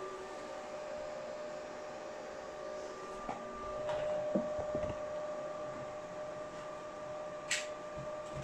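Graphics-card cooling fans on an open-frame crypto-mining rig running steadily, a whir with a faint steady whine. A few soft knocks come in the middle, and one sharp click near the end.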